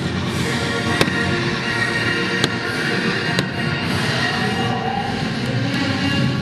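Music from a castle night show, with fireworks going off over it: three sharp bangs in the first few seconds.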